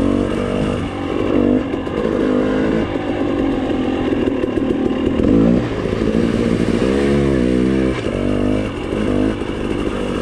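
2019 KTM 300 XCW TPI two-stroke dirt bike engine being ridden on the trail, its pitch climbing and dropping several times with the throttle.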